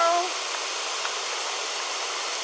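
A steady, even hiss of outdoor noise, with no rhythm or pitch, after a woman's voice ends a word at the very start.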